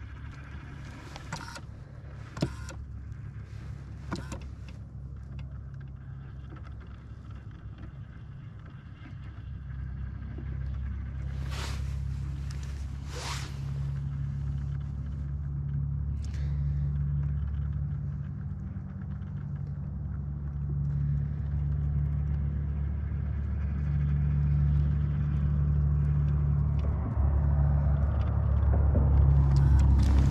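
Low, steady hum of a bass boat's electric trolling motor, stepping up and down and growing louder. A few sharp clicks come in the first few seconds and two short rushing sounds around the middle.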